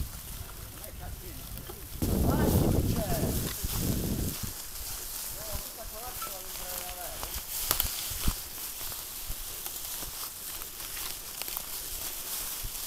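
Mountain bikes being pushed on foot through dry leaf litter: crunching footsteps and tyres in the leaves, with a louder stretch of rustling and bumping about two seconds in. Faint voices are heard briefly in the middle, and there are a couple of sharp clicks from the bikes.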